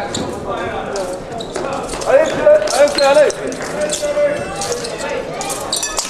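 Voices echoing in a large sports hall, with a loud held voice about two seconds in lasting a little over a second. Sharp taps and thumps of fencers' footwork on the piste are heard throughout.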